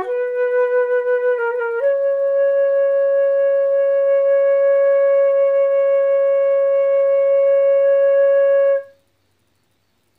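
Solo flute playing slowly: a short rising phrase with a quick ornament, then one long steady held note of about seven seconds that stops a second before the end.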